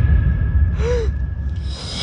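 Show sound-system soundtrack between musical pieces: a steady deep rumble, a short breathy whoosh with a brief rising-then-falling tone about a second in, and a swelling whoosh building near the end.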